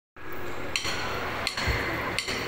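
A count-in before a drum kit performance: two sharp clicks about three-quarters of a second apart over a low steady hum.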